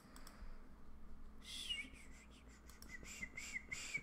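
Faint whistling by a person: a high note glides down, then a run of quick wavering notes follows, starting about a third of the way in. A few faint clicks sound underneath.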